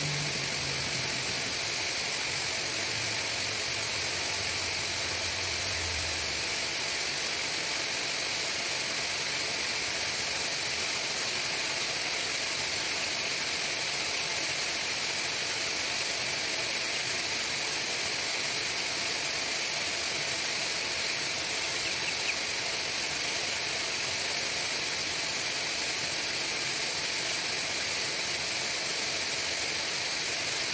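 Steady, unbroken din inside a broiler house: a high hiss from thousands of chicks peeping together, mixed with the running of the ventilation system. A faint low hum steps down in pitch and dies out about six seconds in.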